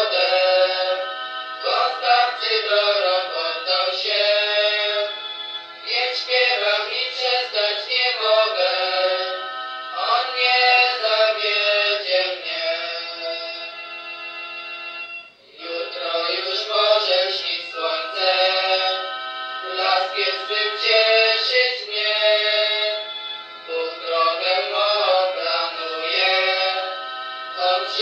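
A Polish religious song being sung, with a short break about halfway through.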